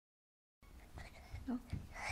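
Silence for about half a second, then the low rumble of a phone being handled close up, with a young child's faint whispering near the microphone.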